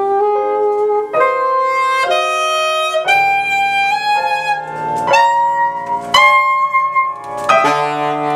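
Alto saxophone and grand piano improvising together: long held saxophone notes over struck piano chords that change every second or so.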